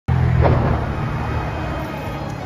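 City street traffic: a passing car's engine with a steady low hum, loudest at the start and fading away.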